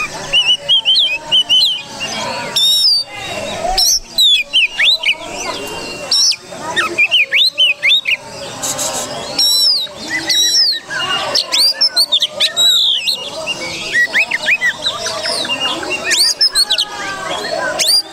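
Oriental magpie-robin (kacer) singing a loud, fast, varied song of whistles, chirps and sharp rising and falling notes, delivered in quick bursts with short pauses.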